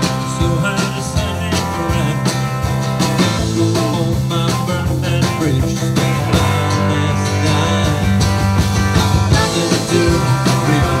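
A country-rock band playing live: electric and acoustic guitars over a steady beat, with a man's lead vocal.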